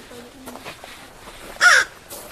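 An American crow gives one short, harsh caw about one and a half seconds in.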